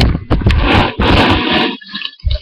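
Loud, rough, distorted noise right at a webcam's microphone, in a few bursts with short breaks, breaking up near the end.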